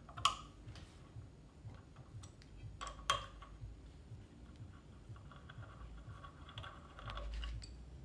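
Allen key turning a bolt out of a turntable's top plate: faint scattered clicks and ticks of metal on metal, with one sharper click about three seconds in.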